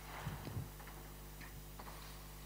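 Faint room tone with a steady low electrical hum, two soft low knocks about a quarter and half a second in, and a few faint clicks.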